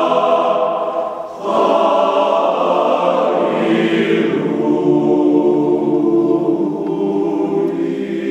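Men's choir singing a cappella in sustained chords, with a short break between phrases about a second in before the voices come back in.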